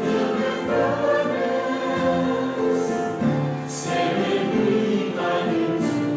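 A hymn sung by a choir with instrumental accompaniment: long held notes that change every second or so.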